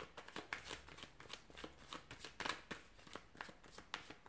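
Tarot cards being shuffled by hand: a run of quick, irregular soft clicks and slaps of card on card, loudest about two and a half seconds in.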